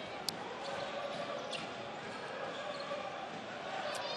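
Basketball arena during live play: a steady crowd hubbub with the ball bouncing on the hardwood court, and a sharp click about a quarter second in.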